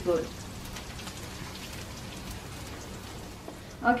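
Sliced shallots frying in oil in a wok: a steady sizzle with faint crackles. The shallots have browned to about the right colour, close to done before they turn bitter.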